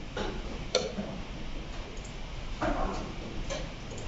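Short wooden clicks and knocks of blitz chess play: chess pieces set down on a wooden board and the chess clock's buttons pressed. There are about four separate strikes, the sharpest under a second in.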